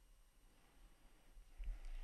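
Near silence: faint room tone, with a soft low thump about one and a half seconds in.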